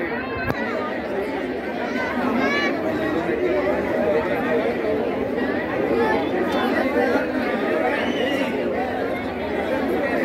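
Crowd chatter: many people talking at once, with overlapping voices.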